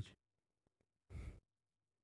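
Near silence broken by one short exhale close to the microphone, a sigh-like breath lasting about a quarter of a second, a little over a second in.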